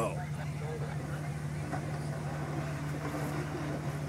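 Four-wheel-drive vehicle's engine running at a steady low idle, with no revving, while the vehicle sits halted partway up a steep dirt hill climb.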